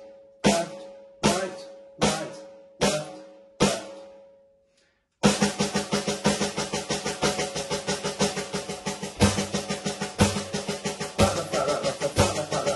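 Snare sound of an electronic drum kit played with sticks: the paradiddle-diddle rudiment (right, left, right, right, left, left), first as slow, evenly spaced strokes that each ring out, then after a short pause as a fast, continuous run with occasional louder strokes.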